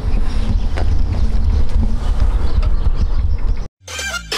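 Wind buffeting the microphone in loud, irregular low gusts, cutting off suddenly near the end as the recording ends.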